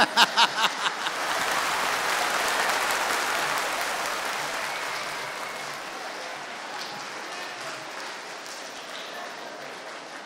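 A large audience applauding, the clapping swelling over the first two seconds and then slowly dying away.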